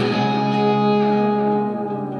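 Acoustic guitar and steel guitar playing: the strumming stops and a chord is left ringing while steel guitar notes slide and glide over it, fading slightly near the end.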